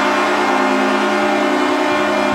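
Calgary Flames arena goal horn sounding a steady, held multi-note chord to signal a home goal, with the crowd cheering underneath.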